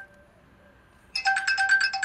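Incoming-call ringtone on a car's infotainment system: a burst of fast repeated electronic beeps, about nine a second, starts just over a second in after a short pause between rings.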